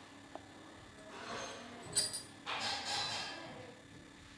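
Wooden spatula stirring and scraping fried drumstick leaves in an aluminium kadai, with one short ringing metallic clink of the pan about halfway through.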